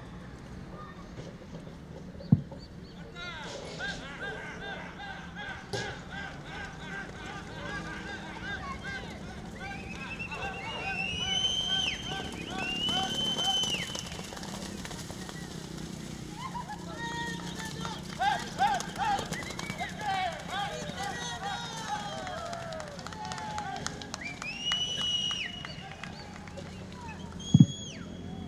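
Voices calling and shouting across the arena while horses chase a calf. The calls come in loud spells: about 10 to 14 seconds in, and again from about 17 to 26 seconds. There is one sharp click about two seconds in.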